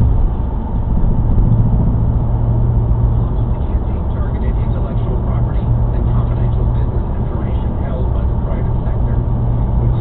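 Steady drone of a car driving at highway speed, heard from inside the cabin: tyre and engine noise with a strong low hum. Faint talk rises over it from about halfway through.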